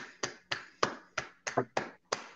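Hand clapping in thanks: a short run of sharp, separate claps at about four a second, heard through a video-call microphone.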